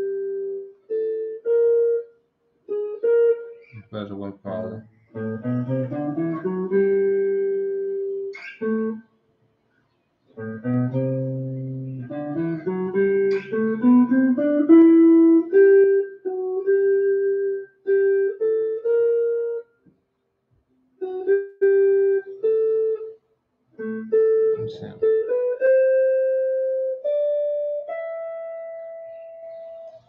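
PRS Silver Sky electric guitar played one note at a time through an amplifier, running a Dorian mode scale pattern up and across the neck. The notes mostly climb in steps, with two short pauses, and end on a slow rising sequence of held notes.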